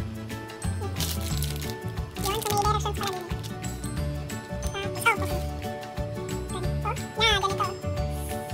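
Playful background music with a steady beat. Twice in the first half there is a short crinkle of thin plastic as the casing of a snack sausage is peeled.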